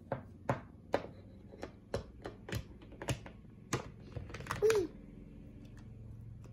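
Light clicks and taps of a plastic toy doll knocking against a plastic toy slide and pool, a dozen or so at uneven intervals, roughly two a second. A short child's vocal sound that falls in pitch comes about two-thirds of the way through.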